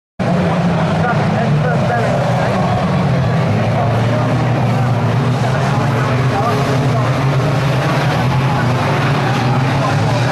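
Banger racing cars' engines running together on the track, loud and steady, cutting in suddenly about a quarter second in, with voices mixed in.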